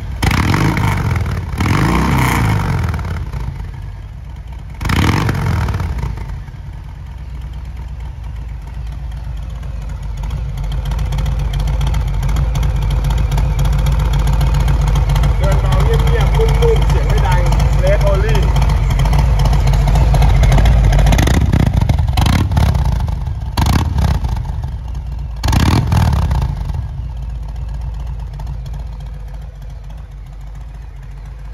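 2021 Harley-Davidson Low Rider S V-twin (Milwaukee-Eight 114) breathing through an S&S Race Only exhaust in Stage I trim, idling and being blipped on the throttle. There are several sharp revs in the first few seconds and three more about two-thirds of the way through, with a steady low idle in between.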